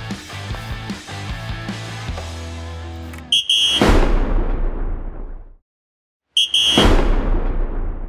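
Background music with a steady bass line, then a transition sting: a short buzzer-like tone with a deep boom that fades away, a brief silence, and the same buzzer and boom again about three seconds later.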